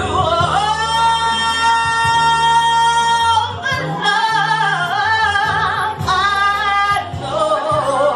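A woman singing R&B into a handheld microphone. She holds one long note for about three seconds, then sings wavering vocal runs with vibrato and holds a second note near the end.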